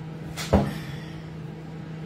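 A single sharp thump about half a second in, over a steady low hum.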